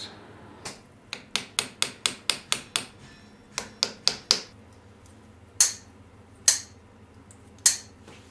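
Small hammer tapping on the metal of a pocket knife: a quick run of light taps, a short second run, then three harder, ringing blows spaced about a second apart near the end.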